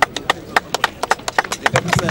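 Scattered hand clapping from a small group of people: separate, irregular claps, about seven or eight a second.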